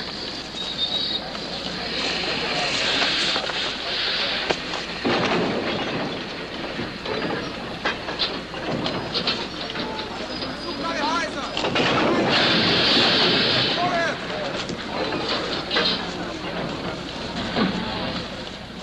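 Rail yard train sounds: scattered clanks and rumble, with two spells of hiss, about two seconds in and again about twelve seconds in. Indistinct voices are heard through it.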